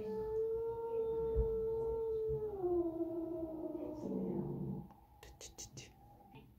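French bulldog howling, one long drawn-out steady note that drops to a lower pitch about two and a half seconds in and dies away around four seconds. A few light clicks follow near the end.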